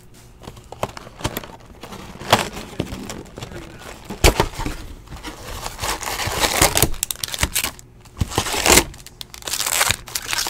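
Cardboard trading-card box being opened and its wrapped packs pulled out and handled: crinkling and rustling of pack wrappers, with a few sharp snaps of card stock.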